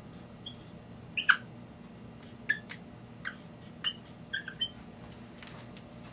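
Dry-erase marker squeaking on a whiteboard in about nine short squeaks spread over the first four and a half seconds, as wedge bonds and letters are drawn. Under it, a steady low hum.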